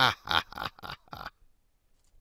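A quick string of about six short grunt-like vocal sounds over just over a second, the first one loudest, heard straight after someone is asked whether they are awake.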